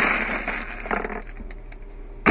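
Thin plastic bag crinkling as it is stuffed into a console storage bin, loudest at the start and fading within about half a second, followed by a few lighter rustles about a second in.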